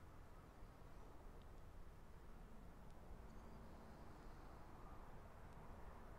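Near silence: faint, steady background noise.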